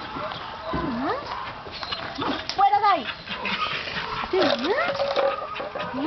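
A dog whining in short cries that swoop down and back up in pitch, about four times, mixed with a woman's soft wordless cooing.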